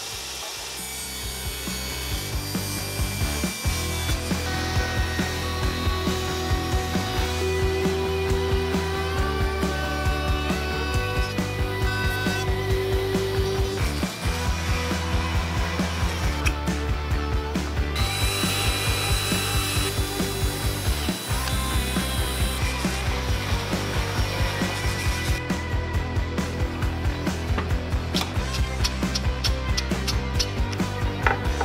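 Background music with a steady beat, laid over woodworking power tools cutting and sanding pine boards: a table saw and a random orbit sander.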